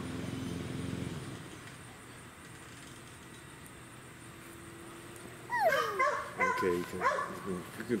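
A puppy whining and yipping in high cries that slide down and up, starting about two-thirds of the way in after a quiet stretch.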